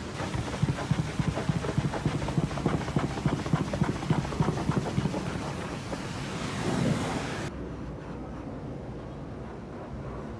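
Pressure-washer jet spraying the steel rear panel and mud flap of a cargo truck, a loud rushing spray with rapid pulsing. About seven and a half seconds in the sound turns quieter and duller.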